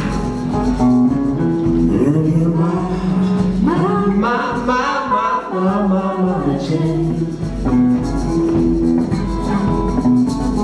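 Live hill country blues band playing. A semi-hollow electric guitar takes the lead with bending, sliding notes over a drum kit with a steady low kick-drum pulse.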